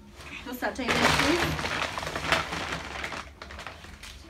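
Brown paper shopping bag rustling and crackling as it is pulled open and rummaged through, starting about half a second in and lasting about three seconds.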